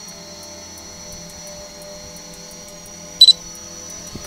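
DJI Mavic Pro quadcopter hovering low, its propellers and motors giving a steady whine made of several high tones. A little past three seconds in comes one short, loud, high electronic beep.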